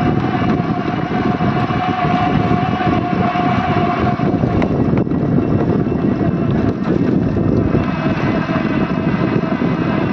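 Wind rushing and buffeting on the microphone of a moving bicycle, loud and uneven, with a faint steady hum in the first four seconds or so.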